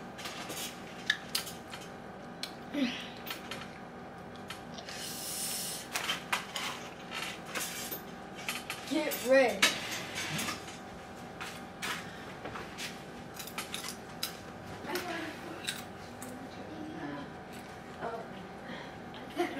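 Scattered light clicks and knocks of a bowl being handled and set down on a table, with a soft rustle about five seconds in.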